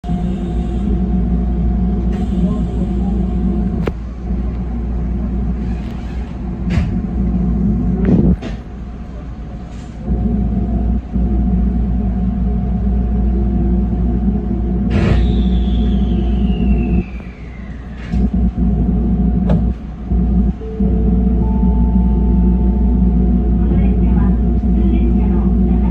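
Cab interior of a JR 313 series electric train standing at a station platform: a steady low hum from the idling train's equipment, with scattered clicks and knocks. About midway a whistle-like tone falls in pitch over a few seconds, and near the end two short steady tones sound, a lower one then a higher one.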